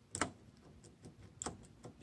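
Phillips screwdriver turning a small screw into a CVK carburetor's top cap: one sharp click just after the start, then faint, irregular ticks as the screw is driven.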